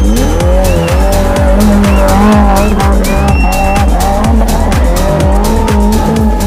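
Modified Maruti Gypsy's engine revving up and down, mixed with loud background electronic music that has a steady beat of about two thumps a second.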